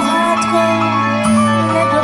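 A woman singing into a microphone over amplified backing music, with held notes over a steady bass line.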